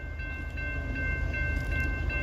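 Grade-crossing warning bell ringing rapidly, about three strokes a second, over the low rumble of approaching diesel freight locomotives.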